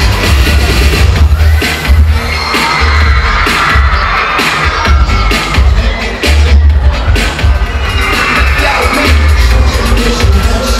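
Loud dance-pop track played over a concert sound system during an instrumental dance break, driven by a heavy pulsing bass beat, with the audience cheering.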